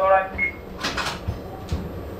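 The tail of a radio call to the train crew, a short beep, and about a second in a brief burst of hiss, over the low running rumble of a TRA EMU800 electric multiple unit moving slowly through the yard, with a couple of wheel knocks over the points.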